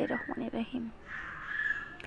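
A few short soft knocks in the first second, then a harsh animal call drawn out for about a second near the end.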